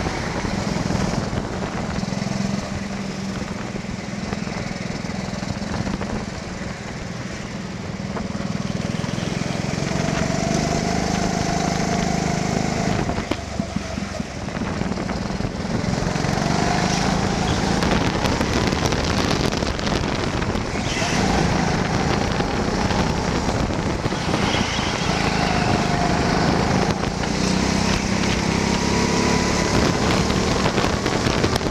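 Go-kart engine running on track, heard from on board, its pitch rising and falling as the kart brakes and accelerates through corners, with wind noise on the microphone.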